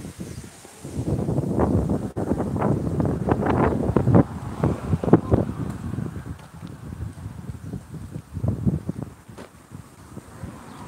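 Wind buffeting the phone's microphone in uneven gusts, loudest in the first half and again briefly near the end.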